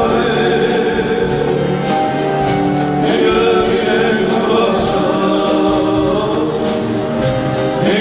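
A man singing an Armenian pop song live into a handheld microphone, with a live band accompanying him and long held vocal notes.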